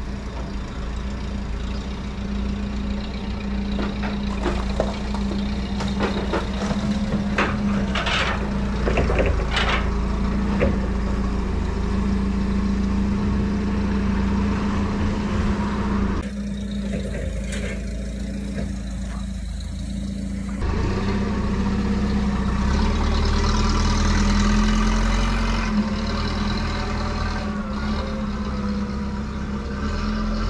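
A vehicle engine idling steadily, with a cluster of sharp squeaks and knocks a few seconds in and a louder stretch a little past the middle.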